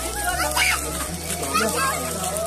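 Voices of people and children chattering, over background music with held notes and a bass line that changes about a third of a second in and again about a second in.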